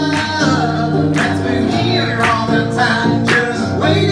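Acoustic guitar strummed about once a second under voices singing a melody together, in a live folk-style song.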